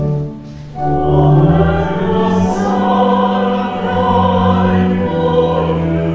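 A held organ chord ends, and after a short pause voices begin singing a hymn together with organ accompaniment.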